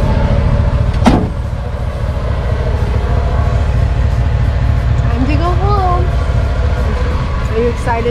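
Portable 12-volt piston air compressor running steadily, a loud rapid chugging, while it inflates an off-road tire through a coiled hose. There is a sharp click about a second in.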